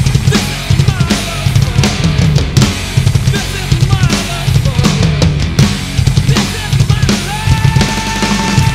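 Drum kit with Zildjian cymbals played hard along with a heavy rock recording: a dense, driving beat of kick, snare and cymbal hits. A held note comes in near the end.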